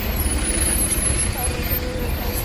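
Steady low rumble of outdoor street noise, with faint, indistinct voices.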